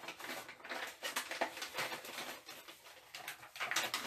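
A paper slip being folded and handled, crackling and rustling in quick irregular bursts.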